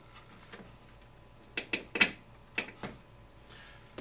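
About six short, sharp clicks and taps, the loudest about halfway through: hand tools and small metal and plastic parts knocking together as a lock nut is set on a hub-carrier bolt of a 1/5-scale RC buggy.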